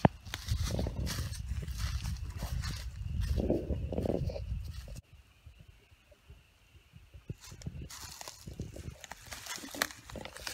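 Footsteps crunching through dry leaves and wood chips, with wind rumbling on the microphone. The sound drops off suddenly about halfway through, and rustling steps in the leaves start again near the end.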